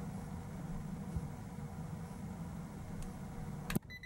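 Steady low hum of the basement's gas-fired heating furnace running, with a single sharp click near the end.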